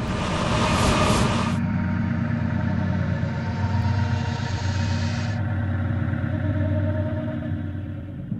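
A steady, loud low rumble. Its hissy upper part drops away abruptly about one and a half seconds in, and again about five and a half seconds in.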